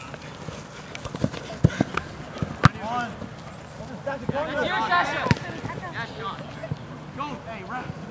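Soccer players shouting to each other, with a longer call from several voices about four to five seconds in. Several sharp knocks of a soccer ball being kicked cut through, the loudest about one and a half and two and a half seconds in.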